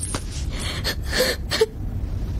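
A person's breathy gasp about a second in, followed by a very short murmur, over a steady low hum.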